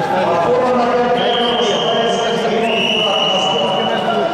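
Several men's voices overlapping indistinctly in a large sports hall, with no clear words. Two long, high, steady tones sound one after the other through the middle and latter part.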